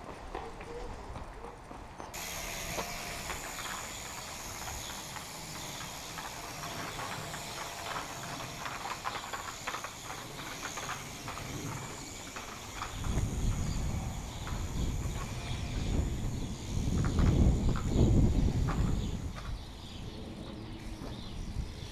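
Wind buffeting the microphone outdoors: a steady hiss, then gusty low rumbles in the second half, with light scattered ticks of handling.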